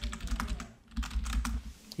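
Typing on a computer keyboard: a quick run of key clicks, with a brief pause about a second in.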